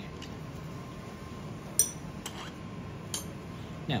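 A few light metallic clinks of steel instruments as a large ring tool with lever arms is taken off an osseointegration implant's dual-cone adapter. The sharpest clink, with a brief ring, comes a little before halfway, and two softer clicks follow.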